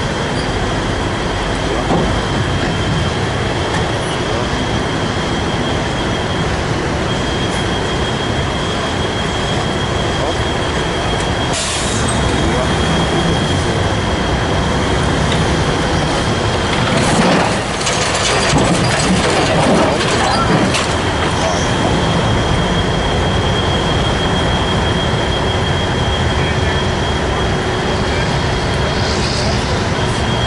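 Heavy wrecker's diesel engine running steadily under load while its boom winches pull an overturned garbage truck upright, with a steady high whine throughout. A sharp crack comes about twelve seconds in, and there is a louder stretch of knocking and creaking metal for several seconds past the middle as the truck rolls onto its wheels.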